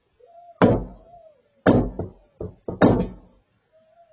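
Five loud, sharp bangs of weapons fire just outside a stopped car, heard through its dashcam: single bangs about half a second in and near the middle, then three in quick succession. Each has a deep, thudding body and a short tail.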